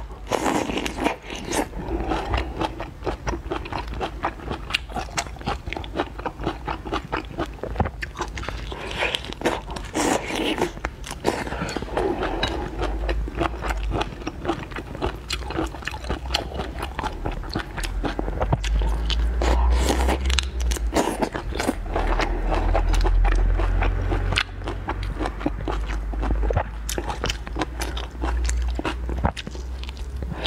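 Close-miked biting and chewing of whole shell-on prawns, with continual wet crunching and crackling of shell and flesh. A low rumble comes in for several seconds in the middle.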